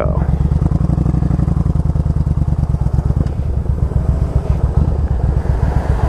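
1997 Yamaha Virago 1100's air-cooled V-twin running through aftermarket Vance & Hines pipes, a steady, rapid low exhaust pulse as the bike pulls away from a stop.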